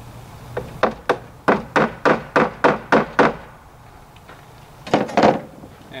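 Hammer tapping a glued wooden dowel into a hole in a wooden cabinet cap: a quick run of about eleven taps, about four a second, then a pause and two more taps near the end.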